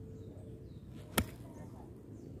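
A golf club striking a golf ball during a full swing: a single sharp, crisp click about a second in.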